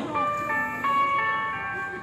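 A simple electronic tune of steady, held notes that steps to a new pitch a few times, in the manner of a street vendor's or vehicle's jingle.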